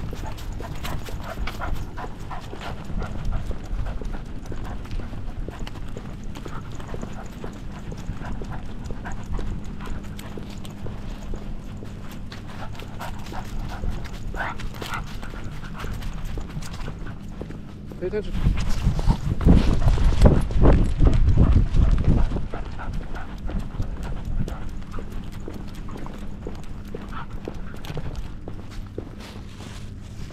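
Dog walking with a camera on its back: quick, continuous rhythmic rattling and clicking of the harness and mount with each step. About eighteen seconds in, a louder rush of low rumbling noise lasts three to four seconds.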